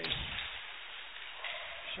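Ice hockey game sound from the rink: a sharp crack at the very start followed by low thumps, then a steady hiss of rink noise with faint voices near the end.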